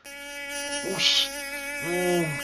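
Mosquito buzzing: a steady whining buzz that grows louder toward the end.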